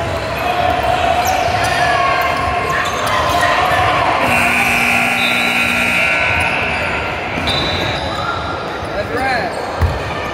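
Basketball game on a hardwood gym court: the ball bouncing, sneakers squeaking and players' and spectators' voices, all echoing in a large hall. A steady tone sounds for about two seconds near the middle, and a sharp thump comes near the end.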